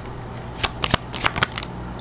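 A tarot deck shuffled by hand: a run of short, crisp card flicks and slaps, about six, bunched in the second half.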